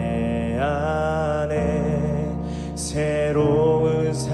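A male worship leader singing a Korean contemporary worship song into a handheld microphone, over sustained instrumental accompaniment.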